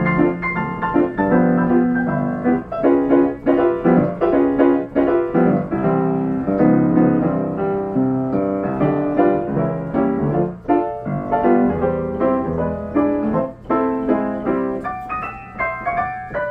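1925 Steinway Duo-Art reproducing grand piano playing a paper music roll by itself: a continuous run of melody and chords on the piano, a 1932 roll recording of a popular song.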